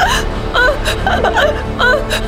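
A woman's put-on sobbing and whimpering, a string of short wavering cries, over background music.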